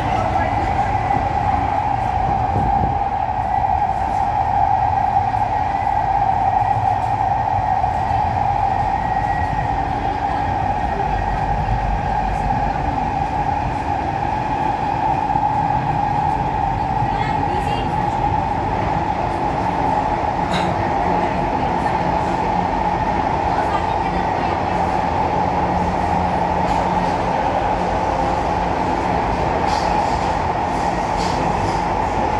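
Interior running noise of an SMRT Kawasaki-Sifang C151B metro train travelling between stations: a steady, loud roar of wheels on rail with a strong droning band, and a few faint clicks partway through.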